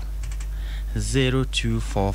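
A quick run of about four keyboard clicks, then a voice speaking about a second in, over a steady low electrical hum.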